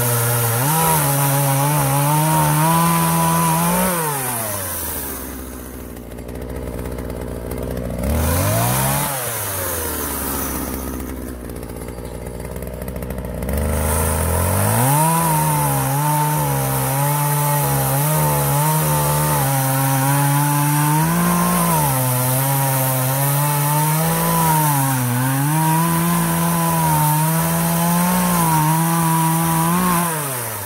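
Partner 351 two-stroke chainsaw cutting a log at full throttle, its pitch wavering under load. It drops to idle about four seconds in, blips once, revs back up about fourteen seconds in and cuts on until it falls off at the end. The cut goes slowly because the chain is somewhat dull and slow.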